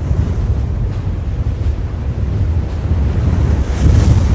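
Sound-effect rumble under an animated title card: a loud, steady, deep rumble with a hiss over it, like wind or surf, swelling with a brighter rush near the end.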